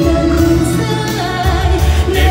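Live concert music: a male and female vocal duet singing held notes over band accompaniment with a steady bass line.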